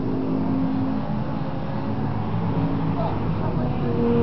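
An aircraft engine running steadily, a drone made of several held low tones.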